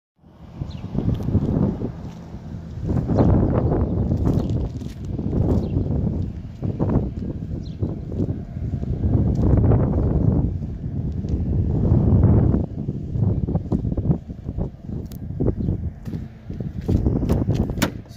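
Wind buffeting the microphone in gusts that swell and fade every couple of seconds, with a few sharp clicks near the end.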